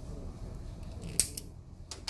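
A few sharp clicks at a flash point tester as its gas flame is lit. The loudest comes about a second in, with a second just after it and a third near the end.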